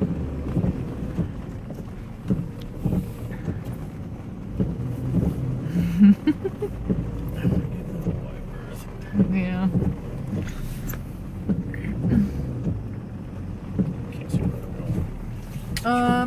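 An old pickup truck's engine runs low inside the cab as the truck backs up on a flooded street. A short laugh comes about six seconds in, with a few other brief voice sounds.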